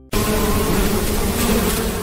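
Buzzing of bees as a logo sound effect. It starts suddenly just after the beginning and holds steady and loud.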